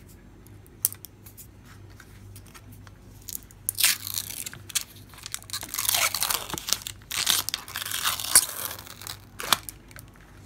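Blue plastic protective film being peeled off a metal nail-stamping plate. There are a few faint clicks as a fingernail picks at the corner, then irregular crackling and tearing from about four seconds in as the film comes away.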